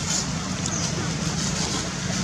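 Steady outdoor background noise: a constant low hum under an even hiss, with faint voices mixed in.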